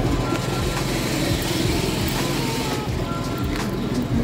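Busy open-air market ambience: an engine running steadily, with music playing.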